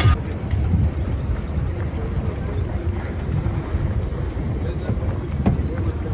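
Boat under way: a steady low rumble of engine and water, with wind buffeting the microphone.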